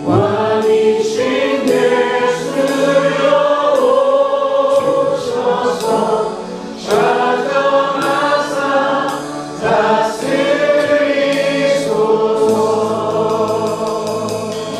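A worship band playing a praise song live: voices singing together in held, phrased notes over a drum kit with repeated cymbal strikes.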